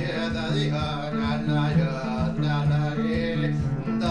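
Solo cello played without the bow, with short plucked strikes over low notes that alternate between two pitches, while the cellist sings a wordless, chant-like line over it.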